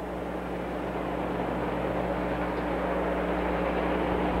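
Steady background noise with a low electrical hum running under it, growing slightly louder over the few seconds.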